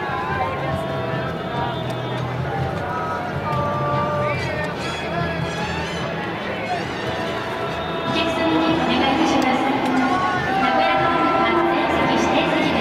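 Ballpark crowd sound: many voices talking over music playing in the stadium, growing louder about eight seconds in.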